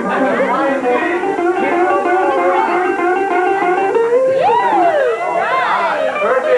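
Live guitar music: a 1979 Guild D40C acoustic guitar and an electric guitar playing together. A note slides up and back down about four seconds in, with voices alongside.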